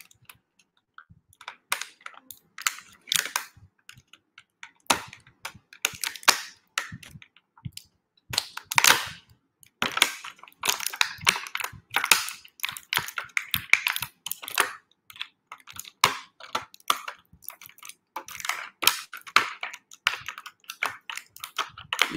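Plastic toy packaging being handled and pulled open, a dense run of irregular crinkles, crackles and sharp clicks.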